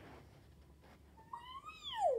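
A cat meowing once, a little past halfway through: a single drawn-out call that rises and then falls in pitch.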